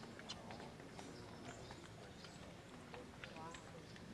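Faint murmur of a spectator crowd on a golf course, with scattered short clicks and taps and a brief voice near the end.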